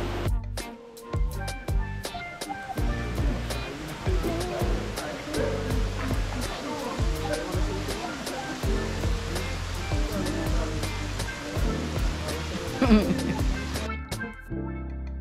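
Background music with a steady beat and a sung vocal, over a steady rush of falling water.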